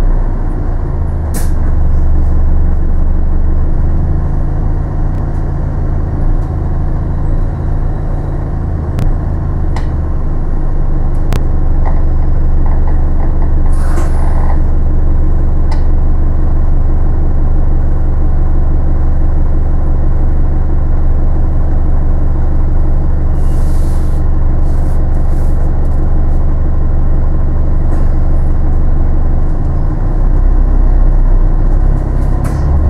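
Bus heard from inside the passenger saloon: a steady low drone of the engine and drivetrain while under way, with a few sharp rattles and two short hisses of compressed air about halfway through and again past two-thirds, typical of the air brakes.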